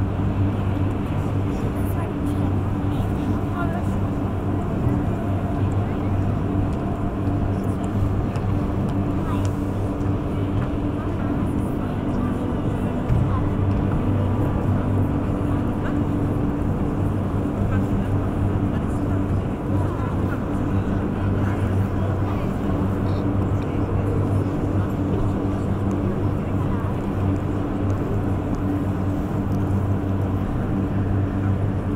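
A steady low drone holding a few fixed low pitches, with an indistinct murmur of voices under it in a large hall.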